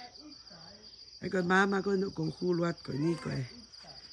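Crickets trilling in a steady high chirr throughout. A person's voice talks over them from about a second in until near the end, and the voice is the loudest sound.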